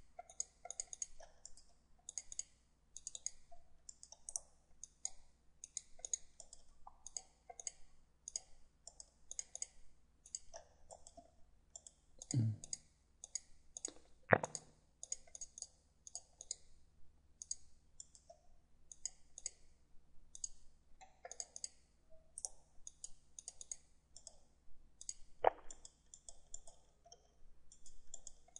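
Computer mouse clicking steadily, often in quick pairs, as the CAD drawing is edited, with a few louder knocks in between, the loudest about fourteen seconds in.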